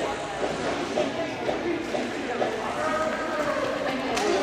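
Indistinct chatter of many voices overlapping in a large gym, with no single voice standing out.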